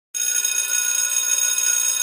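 Electric bell ringing steadily, as a school bell does, starting a moment in with a high, metallic ring.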